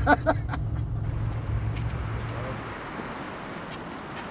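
Engine and road rumble heard inside an older car's cabin as it drives, with a short laugh at the start. The rumble fades out a little past halfway, leaving a plain hiss.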